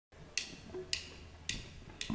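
Drumsticks clicked together three times, evenly about half a second apart: a count-in, with the band coming in on the next beat.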